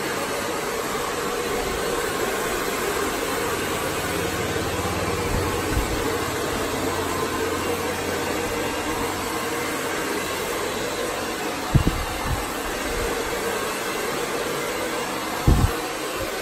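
Handheld hair dryer blowing steadily on hair, a constant rush of air with a steady hum. Two brief low thumps, one about twelve seconds in and one near the end.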